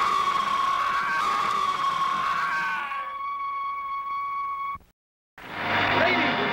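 A shrill, scream-like cry held on one high, unwavering pitch for nearly five seconds, with noise under it for the first three. It cuts off suddenly, leaving a brief dead silence before music comes back in near the end.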